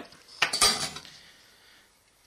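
Stainless-steel sink strainers clinking together as they are handled: one metallic strike about half a second in, ringing briefly and fading.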